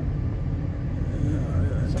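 Steady low rumble of a car driving slowly, heard from inside the cabin.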